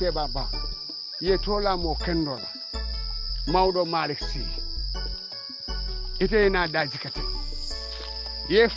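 A voice talking in short phrases over background music with a low bass line, and a steady high-pitched whine under both.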